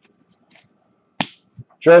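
A single sharp snap about a second in, a baseball card flicked off the top of a handheld stack, with faint card rustling around it; a man starts speaking near the end.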